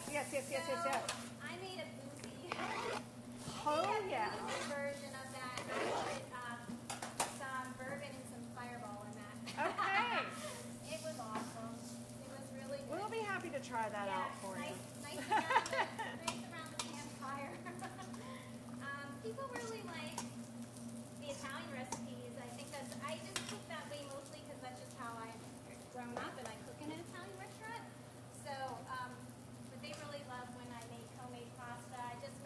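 Zucchini slices sizzling in a pan on a gas range over the steady hum of the range hood fan, while a utensil stirs in a metal mixing bowl.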